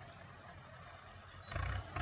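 Faint low rumble of a Ford 7600 diesel tractor pulling a disc harrow through the soil, growing louder near the end.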